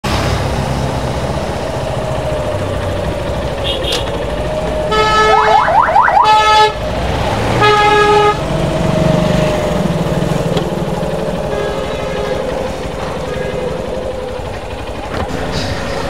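Motorcycle engine running steadily, with a horn sounding over it: a longer blast about five seconds in and a short one about two seconds later.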